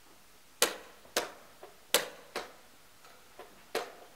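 Sharp clicks and knocks of a blitz chess game: wooden chess pieces set down on the board and a digital chess clock's buttons pressed. There are about five loud clicks at uneven spacing, with a couple of fainter taps between them.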